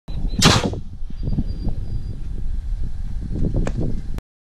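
Homemade PVC compressed-air cannon firing once: its modified sprinkler valve dumps the stored air in one short, loud whoosh about half a second in. Wind buffets the microphone throughout, and a sharp click comes near the end.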